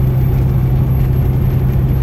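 Steady low engine drone and road noise inside the cab of a truck cruising at highway speed.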